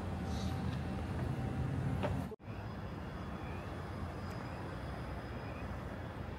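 Outdoor city street noise: a steady low rumble of traffic, broken by a brief dropout a little over two seconds in.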